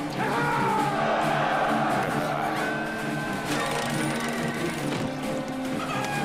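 Background music from the soundtrack: sustained low notes held under a higher melody line that glides up and down.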